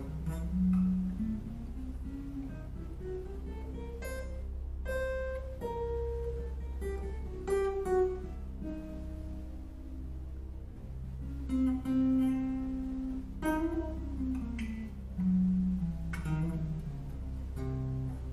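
Archtop jazz guitar playing single notes of the C auxiliary diminished blues scale, the eight-note half-whole diminished scale, note by note. It climbs and then descends in pitch, twice over.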